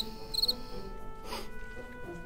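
Cricket chirping sound effect: a short trilled chirp about twice a second, stopping about half a second in, the comic 'crickets' cue for a joke that got no laugh.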